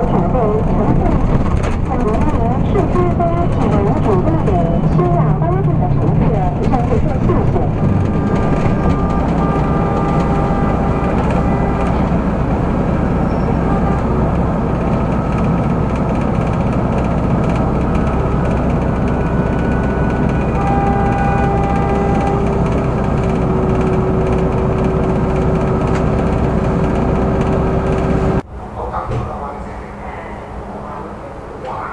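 Running noise inside a moving bus: a steady low engine hum with road noise, with indistinct voices over the first several seconds and a few held tones later on. Near the end the sound cuts abruptly to the quieter running hum of a tram's cabin.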